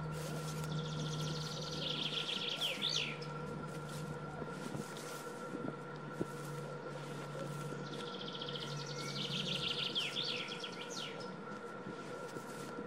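A songbird singing two songs, each a quick trill of about two seconds that ends in a sharp flourish, over a steady low hum.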